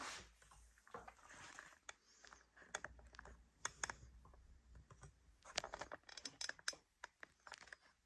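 Faint, scattered light clicks and rustling of small objects being handled, thickest in the middle and latter part.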